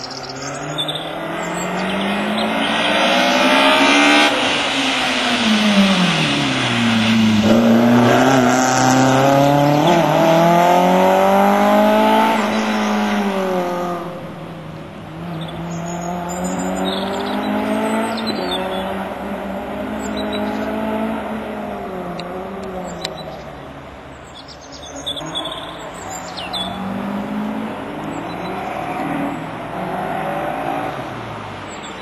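BMW E30 3 Series slalom car's engine revving up and falling off again and again as the car accelerates and brakes between the cones. It is loudest in the first half and eases off later.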